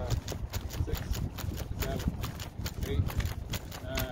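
Rapid footfalls of running shoes on packed dirt, a quick, even patter of several steps a second, as an athlete sprints in place against a resistance harness.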